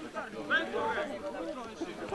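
Several people's voices talking and calling out at once, overlapping.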